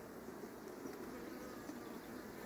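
Honeybees buzzing around an open hive: a faint, steady hum.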